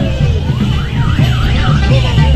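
Loud festival procession music with a high warbling tone that sweeps up and down several times a second, like a siren or car alarm, fading out partway through and returning about a second in.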